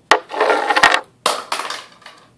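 Makeup items being handled close to the microphone: a sharp click, then about half a second of clattering and rattling of small hard containers, and a second shorter clatter about a second later.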